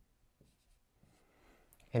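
Faint, short strokes of a dry-erase marker writing on a whiteboard, a few in the first half. A man's voice begins at the very end.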